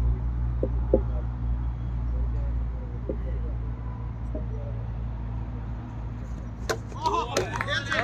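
A ball striking a set of plastic cricket stumps and knocking them over: a sharp crack about seven seconds in, a second clatter just after, then players shouting. A steady low rumble runs underneath, with a few faint knocks earlier on.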